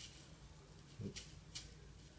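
Quiet room tone with a few faint ticks and rustles of handling as small tomato seeds are tipped out of a paper seed packet into a hand.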